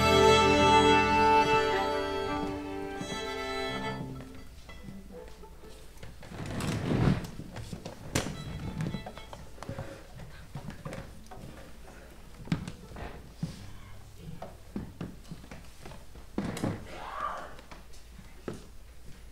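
String orchestra of violins, cellos and double bass holding a chord that dies away about four seconds in. After it, a hushed hall with scattered knocks and thumps, the loudest a few seconds after the music stops.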